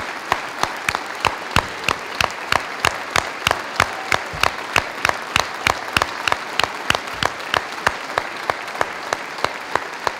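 An audience applauding steadily, with one person's claps close by standing out as sharp, regular claps about three to four a second over the sound of the crowd.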